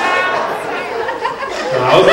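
A man talking into a microphone, the words not clear enough to make out.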